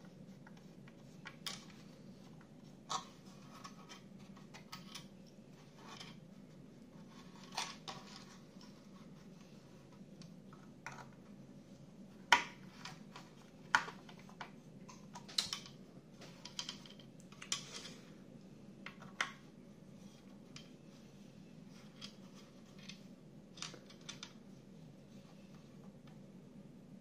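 Small plastic model-car parts being handled and screwed together with a small screwdriver: scattered clicks, taps and brief scrapes of plastic, the loudest two about twelve and fourteen seconds in, over a faint steady hum.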